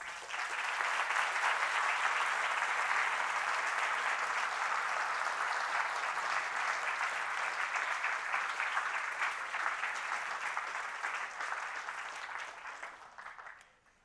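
Audience applauding steadily for about twelve seconds, then dying away near the end.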